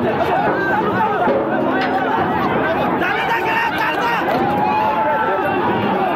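A crowd of many voices shouting and chattering at once, steady and loud, with no single voice standing out.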